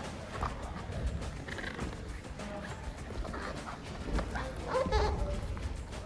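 Two grapplers grunting and breathing hard as they strain against each other, their bodies scuffing and shifting on tatami mats, with the loudest grunts and thuds about four to five seconds in.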